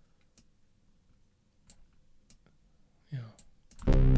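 Sparse computer mouse and keyboard clicks over near silence, with a brief low murmur about three seconds in. Just before the end, loud synthesizer music starts as the session playback begins.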